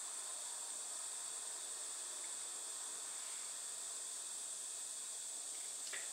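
Steady high hiss of room tone with no other sounds.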